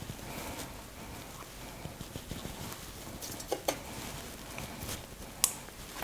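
A metal spoon scraping sticky honey out of a glass jar into a saucepan: faint, with a few light clicks of spoon on glass and one sharper click near the end.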